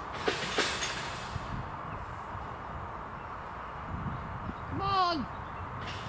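A person's voice calling out once to a horse about five seconds in, in one drawn-out rising and falling call, over a steady low outdoor rumble. There is a short rustle with a couple of clicks in the first second.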